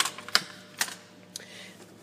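A few sharp plastic clicks as the spring clips on a 2005 Ford Freestyle's air filter housing are unclipped by hand, the two loudest in the first second.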